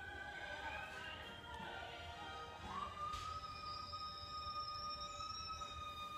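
A woman's voice singing a wordless high melody that climbs, then holds one long high note from about halfway through.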